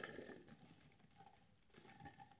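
Faint soft rustling of fingers pressing loose potting soil down around a plant's stems in a pot, once at the start and again near the end, otherwise near silence.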